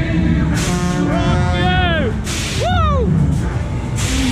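Fairground ride in motion with loud music over a low mechanical rumble; riders let out rising-and-falling whoops, and short sharp hisses cut in twice.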